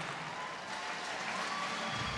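Spectators applauding: a steady, even wash of clapping, fairly low in level.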